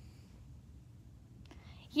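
Quiet room tone with a low rumble and faint breathy sounds, then a voice starts speaking right at the end.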